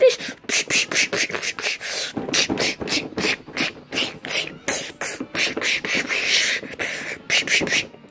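Rapid, uneven string of short, sharp punch sound effects made with the mouth, about four or five a second, for a fight between plush toys.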